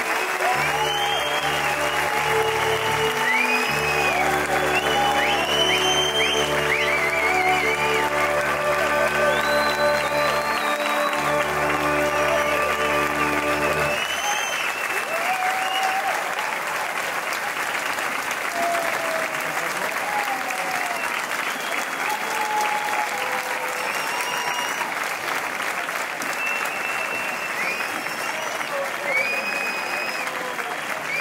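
Audience applauding throughout while the pit band plays sustained closing chords with a bass line. The band stops about halfway through and the applause carries on alone.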